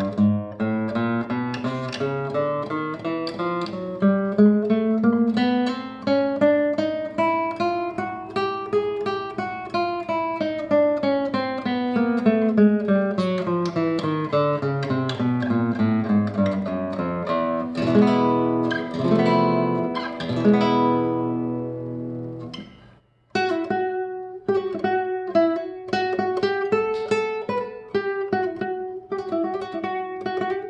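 1974 Manouk Papazian classical guitar played solo: quick runs of plucked notes climbing in pitch and then falling back, then a few chords. There is a short break about 23 seconds in, then more picking.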